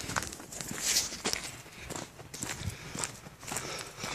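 Footsteps of a person walking at a steady pace along a forest path, about two steps a second.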